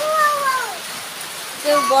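A cat meowing once: a single long call that falls in pitch, over a steady hiss of rain.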